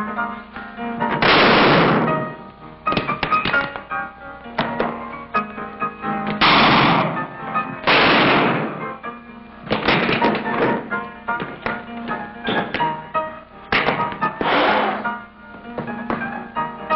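Piano music broken by several revolver shots, each a loud crack that trails off over most of a second, the loudest about a second in, at six and eight seconds, and near the end, with many short knocks and thuds of a brawl in between.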